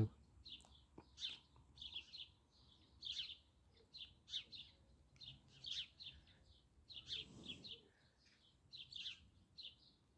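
Faint chirping of small songbirds, short high chirps in little clusters every second or so.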